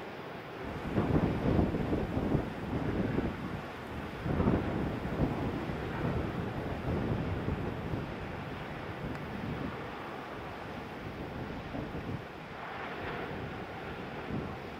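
Wind buffeting the camera microphone over the wash of ocean surf, with louder surges about a second in and again around four seconds, then a steadier rush.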